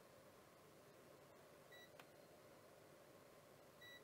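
Near silence broken by two short, faint beeps from a multimeter's continuity tester, one just before halfway and one at the very end, as the probes touch the pads of a zero-ohm resistor; the beep signals continuity. A small click comes around halfway.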